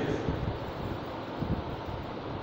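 Steady hiss of room noise with a few soft knocks of chalk against a blackboard as a word is written.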